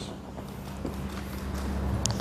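Footsteps of a man walking across a wooden stage floor, over a steady low hum.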